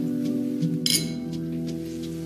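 Wine glasses clinking once in a toast, a short bright ringing chime about a second in, over background music.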